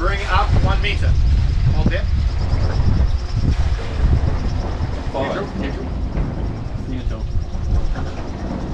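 Sailing yacht's inboard diesel engine running in reverse gear with a steady low rumble, holding the stern toward the quay during stern-to mooring. Brief voices over it near the start and about five seconds in.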